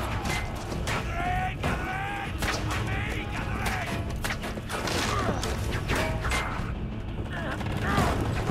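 Film battle soundtrack: men shouting commands and yelling over repeated sharp impacts and clatter, with a low music score underneath.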